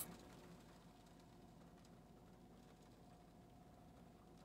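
Near silence: faint room tone in a car's cabin, with a faint steady hum.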